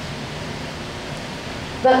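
Steady background hiss with a low hum, the room tone of an amplified hall in a pause in speech; a woman's voice comes back just before the end.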